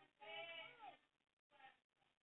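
A faint, drawn-out wordless human voice, about a second long, with a shorter second sound near the end.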